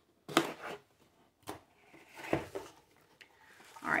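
Scissors cutting through the tape seal of a cardboard mailer box in a few short snips and a scrape, then the box being opened with a rustle of paper.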